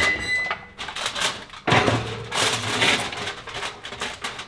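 Metal clatter and scraping of an oven's wire rack as a foil-covered casserole dish is slid onto it, in a short burst at first and a longer stretch in the middle.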